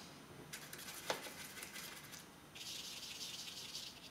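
Watercolour brush and painting gear handled at the palette: a run of light clicks and taps with one sharper knock, then about a second of scratchy brushing as paint is worked on the palette.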